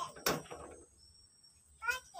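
A single knock of wooden sticks about a quarter-second in as branches are shifted, then near quiet, with a short rising voice-like call at the very end.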